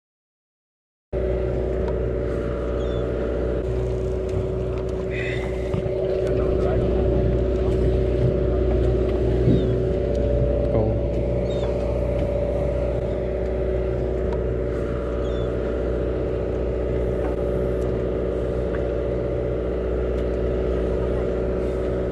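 A fishing boat's engine running at a steady pace: a constant low drone with a steady hum in it. It starts suddenly about a second in.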